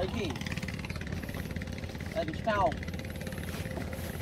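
A small boat engine running steadily at low speed, with short bursts of voices over it near the start and about halfway through.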